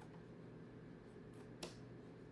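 Near-quiet room with a few soft, short clicks, the sharpest about a second and a half in, from clicking while drawing lasso selections on a computer.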